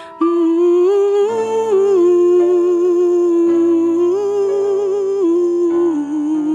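A woman humming a wordless melody with vibrato into a microphone over sustained instrumental backing; the voice comes in just after the start.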